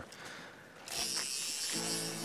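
A steady, high-pitched buzzing hiss starts suddenly about a second in, and background music with held notes comes in near the end.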